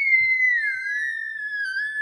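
A young girl's long, high-pitched squeal of delight, held as one unbroken note whose pitch slowly falls.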